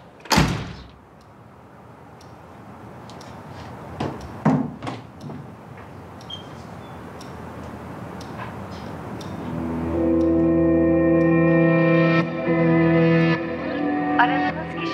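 A front door pushed shut with a single thud near the start, followed by a soft dramatic music score that swells into sustained chords about ten seconds in.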